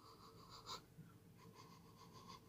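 Near silence: a man sniffing at the mouth of a glass cider bottle, with one short sniff about a third of the way in.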